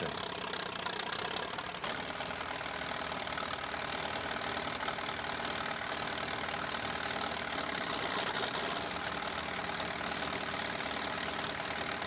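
The three Farmall engines of a custom triple-engine tractor idling steadily together, running evenly and sounding well tuned.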